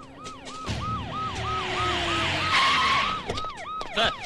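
Police siren yelping in fast up-and-down sweeps, about three a second, over the rumble of vehicles.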